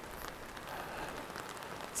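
Rain falling on an umbrella held overhead: a faint, even hiss with scattered small ticks of drops.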